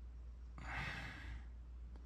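A person sighing: one soft exhale lasting under a second, over a faint low hum.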